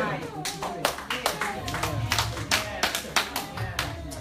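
A small congregation clapping: a scattering of sharp, uneven claps, with faint voices underneath.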